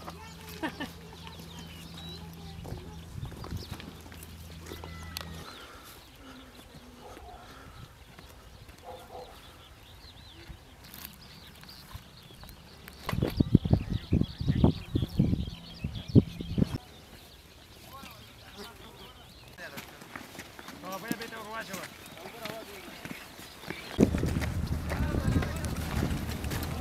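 Footsteps and gear rattle of soldiers walking on a dirt track, loudest in a run of heavy, irregular thumps in the middle. Faint distant voices come and go, with a low steady hum at the start and again near the end.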